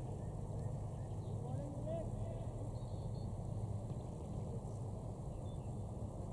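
Outdoor field ambience: a steady low rumble with faint, distant voices of players calling out, strongest about one and a half to two seconds in.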